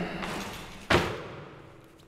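A single heavy thump about a second in, ringing away in a large room, over the fading tail of a louder sound that began just before.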